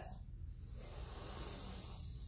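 A slow, deep diaphragmatic inhale: a steady, airy hiss of breath that starts about a third of a second in and keeps going.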